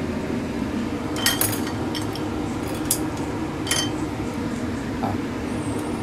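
A few sharp metal clinks as a wire-mesh skimmer knocks against a stainless-steel cooking pot, over a steady low hum.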